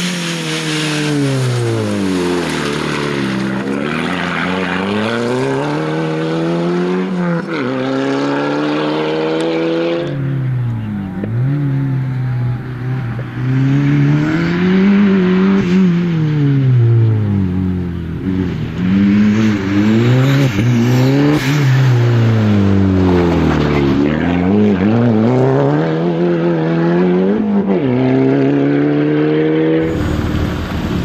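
Rally-prepared VW Golf engine revving hard and backing off over and over as it is driven at speed on a rally stage, its pitch climbing and dropping every few seconds through gear changes and lifts. The sound changes abruptly about a third of the way in, where a new stretch of driving begins.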